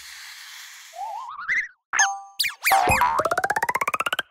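Cartoon-style sound effects for an animated logo: a soft whoosh, a springy rising boing, a short ding, then a fast run of quick pulses rising in pitch that stops right at the end.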